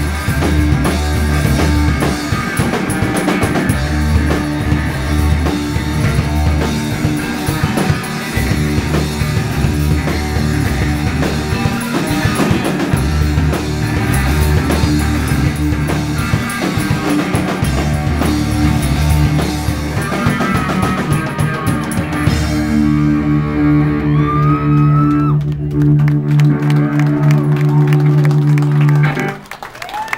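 Live rock band playing loud through a club PA: distorted electric guitars, bass and a drum kit. About two-thirds of the way in, the drums stop and a held, ringing guitar chord carries on until the song cuts off just before the end.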